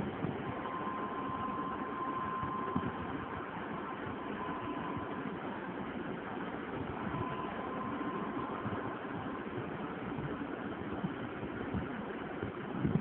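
Steady background hum and hiss with no distinct events, and a faint thin high tone that comes and goes.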